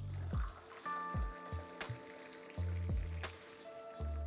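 Background music: a bass line with a kick-drum beat and held synth-like notes above it.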